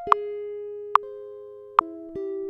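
Metronome clicking at 72 beats per minute, three clicks, over a single clean guitar note held and slowly fading across the tie. A new note sounds with the third click, near the end.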